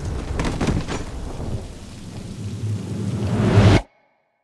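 Heavy rain with rumbling thunder: the low rumble swells to its loudest near the end, then cuts off suddenly into silence.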